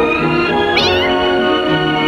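Music playing with steady sustained tones, and a cat meowing once, briefly, a little under a second in.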